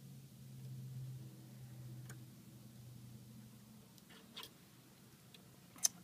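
Faint, sparse clicks of metal tweezers and small serger parts being handled as the needles are threaded, the sharpest click just before the end, over a low steady hum.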